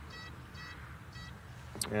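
Metal detector sounding three short, high-pitched beeps as its coil is swept back and forth over a buried target. This is a strong signal even with the coil held well above the ground, which the detectorist takes for a .50 calibre cartridge.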